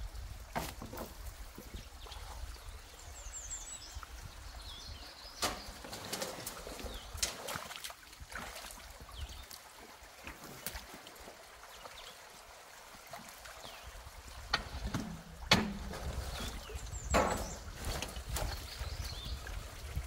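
Water trickling and flowing through a partly blocked culvert, broken by irregular splashes and sharp knocks as sticks are pulled out of a beaver dam by hand and with a rake.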